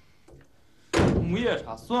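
Low room tone, then about a second in a sudden sharp thud as a man breaks into loud, angry shouting.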